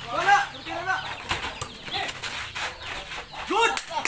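Pickup basketball on a dirt court: short calls from the players near the start and again near the end, with a few sharp knocks of the ball in between.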